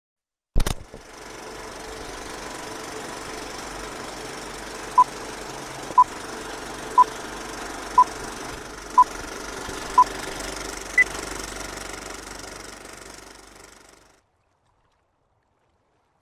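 Vintage film-leader countdown sound effect: a sharp click, then the steady running whir and crackle of an old film projector, with a short beep once a second six times and a higher-pitched beep a second later. The projector noise fades out near the end.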